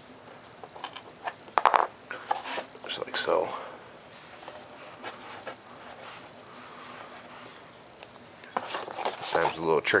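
Foam board rubbing, scraping and knocking as hands work a foam-board spreader piece into a tight slot in a model's tail. There is a cluster of sharp knocks and scrapes early, a quieter stretch, and more clatter near the end.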